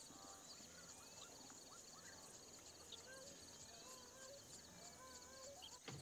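Near silence: faint short wavering animal calls scattered through, over a steady high insect trill.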